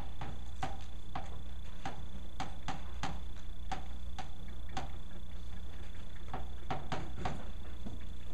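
Chalk clicking against a chalkboard while a line of words is written: a quick irregular run of sharp taps, about three a second, that stops near the end, over a steady low hum.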